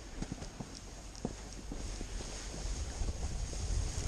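Snowboard sliding over packed snow with scattered crunching clicks, while low wind rumble on the microphone builds steadily as the board picks up speed.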